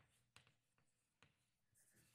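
Near silence broken by a few faint taps and a light scratch of chalk on a blackboard as a word is written.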